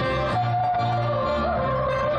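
Small folk-jazz ensemble with accordion and double bass playing a Vietnamese folk tune live, a lead melody that slides and bends in pitch over steady low bass notes.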